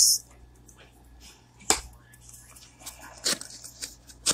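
Oracle cards being handled and laid down on a table: two sharp clicks, about a quarter and three quarters of the way through, with faint rustling of card stock between.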